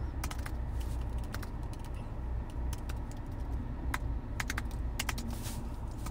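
Typing on an iPhone's on-screen keyboard: about a dozen light clicks at an irregular pace, a few in quick succession.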